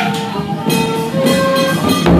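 Traditional festival procession music: a melody of held notes on a wind instrument over sharp percussion strikes from the large barrel drums and cymbals, with one strike right at the start.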